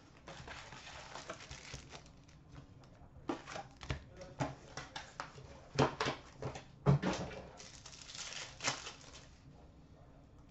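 Trading-card pack wrappers crinkling and tearing as hockey card packs are handled and opened, with scattered sharp clicks and taps of packs on a glass counter, the loudest about six and seven seconds in.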